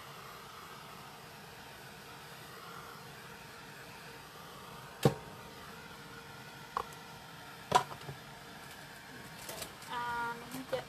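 Handheld craft heat gun running steadily, its fan blowing a constant airy rush while it dries a wet painted journal page. A few sharp clicks break in during the second half.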